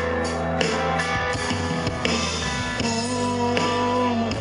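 Live rock band playing an instrumental passage: guitar over bass and drums, with no vocals.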